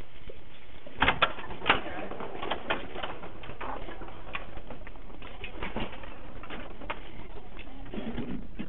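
Rummaging and handling noises: a cluster of sharp knocks about a second in, followed by scattered clicks and rustling.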